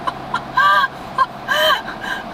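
A woman laughing heartily inside a moving car: a few short bursts, then two longer, high-pitched peals about a second apart, over the steady hum of the car.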